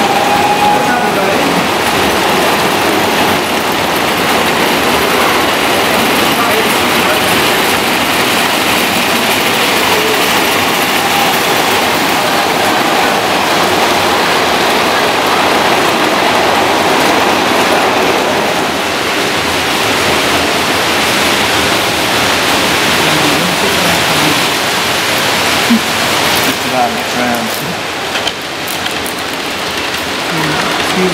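Tinplate model trains running on tinplate track, a dense steady clatter, mixed with the murmur of many people talking in the room.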